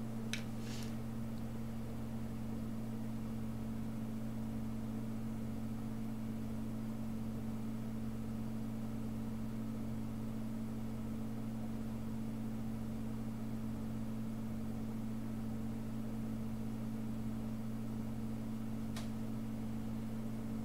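A steady low electrical or fan-like hum, with a slow regular pulsing underneath it, and a couple of faint clicks near the start and near the end.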